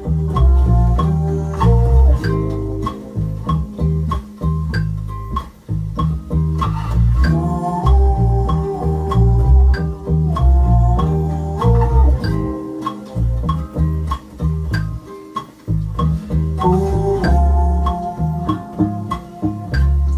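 A four-string electric bass played fingerstyle: a groove of separate low plucked notes. Sustained chords from a backing loop sound above it.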